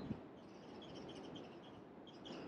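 Faint background with a quick, evenly spaced run of high chirps, about six to eight a second.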